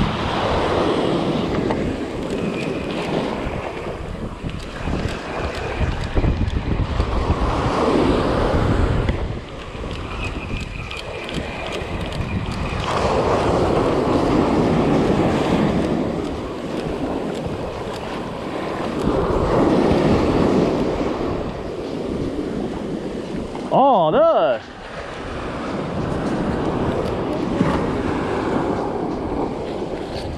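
Surf breaking and washing up the sand in repeated swells, with wind rumbling on the microphone. Near the end there is one brief louder wavering sound.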